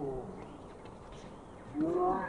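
Drawn-out human vocal calls: one falls away in pitch at the start, and another rises in pitch near the end, with quiet outdoor background between.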